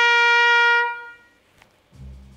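A trumpet holds one long note that fades out about a second in.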